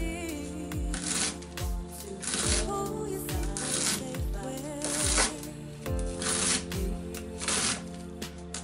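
Background music with a steady slow beat and a melody, over crisp slicing of a white cabbage head with a chef's knife, the blade cutting through the leaves and tapping a wooden board.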